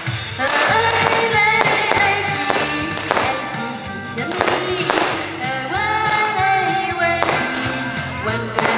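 A woman singing a pop song into a microphone through a stage PA, over loud amplified backing music with a regular beat.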